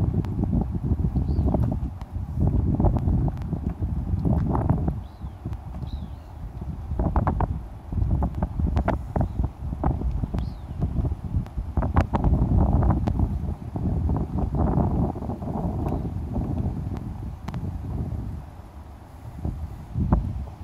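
Wind buffeting the microphone in uneven gusts, a heavy low rumble, with scattered clicks and knocks and a few faint high chirps.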